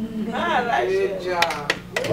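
Voices in the congregation, with a few sharp hand claps starting in the second half.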